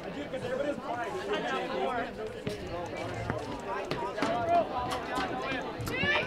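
Voices of players and spectators calling out and chattering at a distance across a soccer field.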